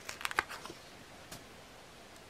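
A sticker sheet handled and set down on a desk: a quick cluster of light paper clicks and rustles in the first half second, then one more tick about a second later, over quiet room tone.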